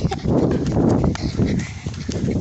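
Running footsteps, a quick uneven patter of thuds on a concrete path and dry grass, picked up close by a phone carried by a runner.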